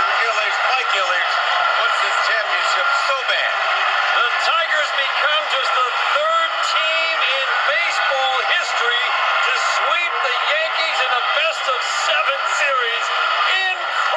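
Ballpark crowd cheering and shouting without letup, many voices at once with scattered whoops, carried on a radio broadcast.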